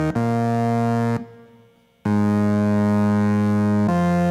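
Nord stage keyboard playing held chords alone in a steady, organ-like tone. About a second in a chord is let go and fades out, leaving a short near-silent gap. A new chord then comes in sharply and holds for about two seconds before the chord changes near the end.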